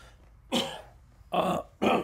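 A man making three short sounds in his throat: one about half a second in, one at about a second and a half, and one near the end.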